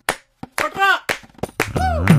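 Hands slapping and clapping on a wooden picnic table top, a few scattered strokes after the beat stops short, with two brief gliding sung notes. The bass beat comes back in near the end.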